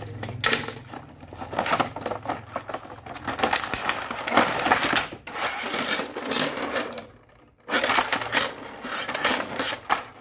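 Clear plastic blister tray being pulled from a cardboard box and handled, crackling and rattling, with the small die-cast toy vehicles clicking in their slots. A brief pause comes about three-quarters of the way through, then the crackling resumes.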